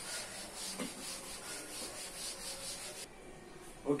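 A chalkboard duster being wiped back and forth across a chalkboard, erasing chalk, in quick strokes about three a second. The rubbing stops about three seconds in.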